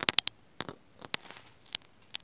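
Plastic packaging wrappers crackling underfoot, in a string of short, sharp crinkles mixed with light footsteps.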